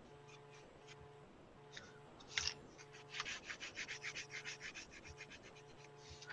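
Hand rubbing paint back and forth over textured mixed-media paper: a couple of scrapes about two seconds in, then a quick run of faint scratchy strokes, about five a second.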